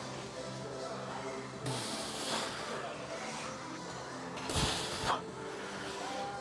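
A lifter's forceful hissing exhalations through the mouth, two strong ones about two and four and a half seconds in, as he strains through reps of a seated cable fly. Background music with steady held notes plays throughout.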